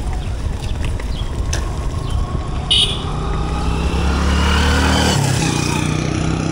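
Wind rumbling on the microphone of a handlebar-mounted camera on a moving bicycle. About three seconds in, a motor vehicle's steady engine drone joins and grows louder, shifting pitch slightly near the end, just after a brief high-pitched chirp.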